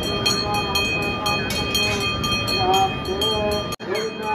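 A voice singing a devotional song over a steady held drone, with even metallic strikes about four times a second. The sound drops out for an instant near the end.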